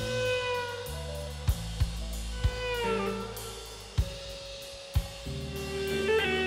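Live rock band playing an instrumental passage: a sustained lead line, most likely electric guitar, with notes bending down in pitch near the middle, over bass guitar and a drum kit. The drums hit sharply about once a second.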